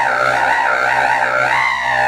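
Baritone saxophone holding one long low note, its tone wavering up and down as it is held.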